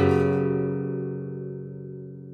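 Classical guitar's closing chord ringing on after the strum and slowly dying away, with no new notes.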